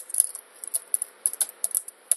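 Computer keyboard typing: a run of quick, uneven key clicks as a command is typed.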